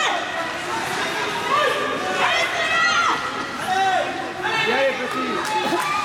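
Several high voices calling out and chattering over one another, with a few faint sharp clicks near the end.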